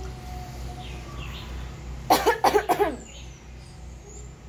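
A short fit of coughing, several harsh coughs in quick succession over about a second, past the middle, from a person eating noodles with hot sauce in a spicy-food challenge.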